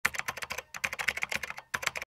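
Keyboard-typing sound effect: rapid, irregular clicks at about ten a second, with two brief breaks, stopping abruptly at the end.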